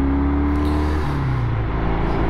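1971 Triumph Trophy TR6C's 650 cc parallel-twin engine running as the bike is ridden on the road. The engine note climbs slightly, then drops about a second in.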